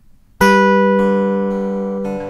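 Acoustic guitar: a strummed chord comes in suddenly about half a second in and rings out, slowly fading, with a lighter strum about a second in. These are the opening chords of a song.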